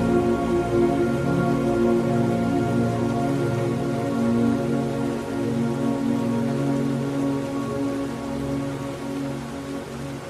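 Slow ambient music of soft, held chords over a steady rain-like hiss.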